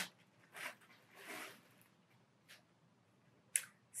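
Clear plastic garment bag rustling and crinkling faintly as a sweatshirt is pulled out of it, with a few soft clicks.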